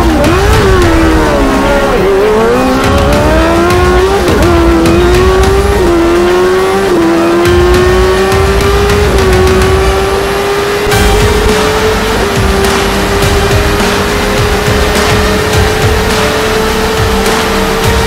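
High-revving sports-car or superbike engine accelerating hard through the gears: the pitch climbs and drops back at each upshift, about seven shifts with the gears getting longer, then holds a high note that slowly rises. Music plays underneath.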